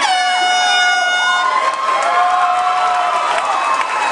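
Air horn blast of about a second and a half, with a slight drop in pitch at the start, signalling that the cage fight has been stopped. Shouting from the crowd carries on over and after it.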